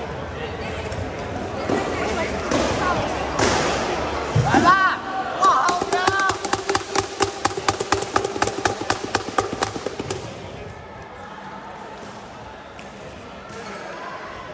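Badminton hall sound: people's voices and squeaks of shoes on the court, then a fast, even run of light taps, about six a second, that stops about ten seconds in.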